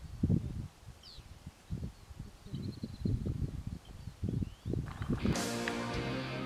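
Irregular low rumbles and bumps on the microphone outdoors, with a few faint, short high chirps. Background music begins near the end.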